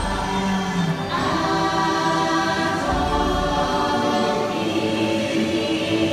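A choir singing long held notes with no instruments to be heard, moving to a new chord about a second in: the ride's choral soundtrack.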